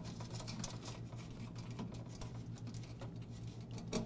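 Faint small clicks and scrapes of a retainer nut being unscrewed by hand from an evaporator fan assembly's mounting, over a low steady hum.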